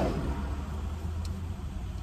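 Car engine idling, a steady low hum, with one faint tick about a second in.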